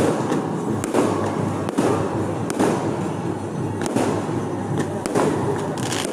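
Firecrackers going off in a dense crackle, with sharper loud bangs about once a second and music underneath.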